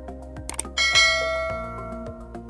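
Background music with a steady beat, and a bright bell chime struck about three-quarters of a second in that rings and fades over the next second.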